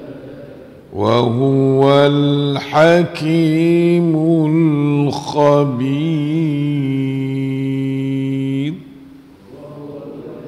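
A man chanting Arabic in the melodic style of Quran recitation, voicing "alhamdulillah", into a microphone. He starts about a second in, rises and falls in pitch, and holds a long final note that stops just before the end.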